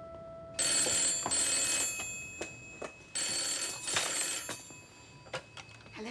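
Telephone bell ringing twice, each ring about a second and a half long, followed by a few clicks near the end.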